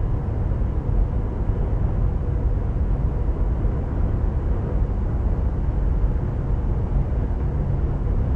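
Steady low rumble of a ship's engines and machinery heard on the bridge, with a faint steady hum over it.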